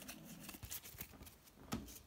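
Faint handling noise of trading cards and packaging: a few light clicks and rustles, several close together around the middle and one more near the end.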